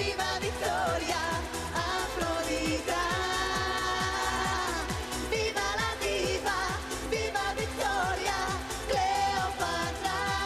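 Dance-pop song with a woman singing lead into a microphone over a steady dance beat.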